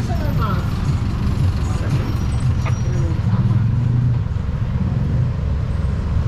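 Busy city street traffic: a steady low rumble of bus and car engines running close by, with brief snatches of voices.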